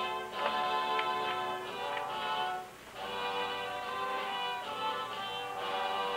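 Music led by violins, playing long held notes, with a short drop in level just before the middle.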